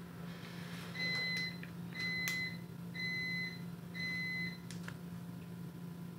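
Four electronic beeps from an appliance, each about half a second long and coming once a second, over a steady low hum.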